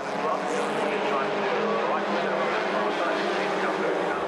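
A pack of Rebels oval-racing cars, each with a reworked 850cc Reliant engine, racing together: several small engines running at once in a steady, dense noise.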